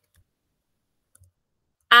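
A few faint, sparse clicks of computer keyboard keys as code is typed, then a woman starts speaking right at the end.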